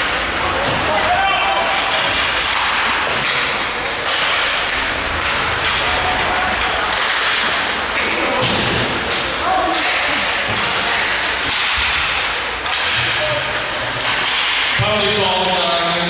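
Ice hockey game sounds: repeated sharp cracks and thuds of sticks, puck and bodies against the boards over the scrape of skates on ice, with spectators' voices underneath and a voice calling out near the end.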